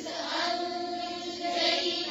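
Several voices chanting a Quranic verse together in Arabic, in melodic tajweed style, with long held notes.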